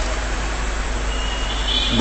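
Steady background noise: an even hiss over a low hum, with a faint high whine coming in about halfway.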